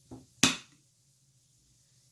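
A single sharp click, as of a hard object knocking, about half a second in, preceded by a brief soft sound.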